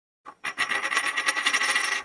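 Coin-toss sound effect: a short tick about a quarter of a second in, then a metal coin ringing and rattling quickly as it spins down.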